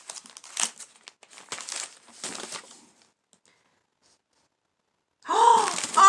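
Packaging crinkling and rustling as a box is unpacked, with sharp crackles over the first three seconds. Near the end comes a loud, drawn-out vocal exclamation of surprise, a long 'ohh'.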